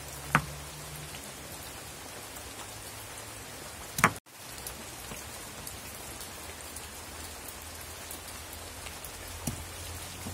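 Steady even hiss with two sharp knocks of a stone roller on a stone grinding slab, one about a third of a second in and a louder one about four seconds in, the louder one followed by a brief cut-out of sound.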